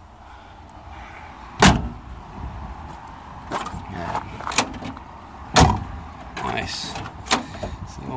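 Doors of a 1959 Oldsmobile Super 88 being worked by hand: two loud door slams, about a second and a half in and again at about five and a half seconds, with lighter clunks of the handle and latch between and one more near the end as a door is opened.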